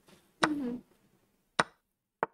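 A short voiced sound from a person, then a single sharp click near the end: the move sound of an online chess board as a piece is played.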